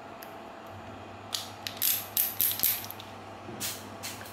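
Ratchet of a stubby ratcheting screwdriver clicking as it is turned: a quiet first second, then a quick run of about nine clicks, and one last click near the end.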